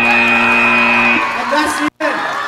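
End-of-match buzzer at a VEX robotics competition field: one steady blare that cuts off about a second in.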